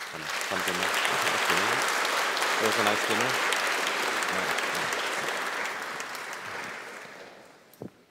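Audience applauding at the end of a talk: the clapping starts at once, holds steady, then dies away over the last couple of seconds.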